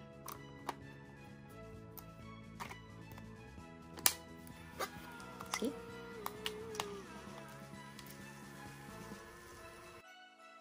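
Soft background music over a few sharp clicks and knocks from a Fujifilm Instax Mini Link printer being handled as its film pack is pushed in and its back door shut, the loudest click about four seconds in.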